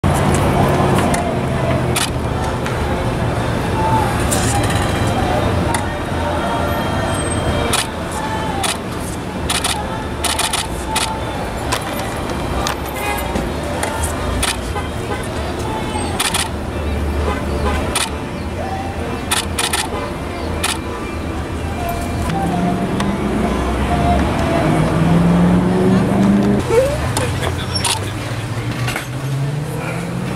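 Outdoor parking-lot ambience: indistinct voices and car sounds over a steady low rumble, with frequent sharp clicks scattered throughout.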